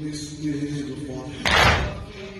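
A male voice holds a long chanted line. About one and a half seconds in, a crowd of mourners strikes their chests in unison in latam, a single loud slap that is the loudest sound.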